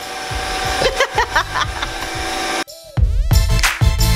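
Background music: a soft held tone, then a brief drop with a falling electronic sweep about two and a half seconds in. A bass-heavy hip hop style beat starts about a second later.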